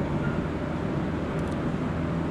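Steady background noise: a low hum with an even hiss over it, with no distinct events.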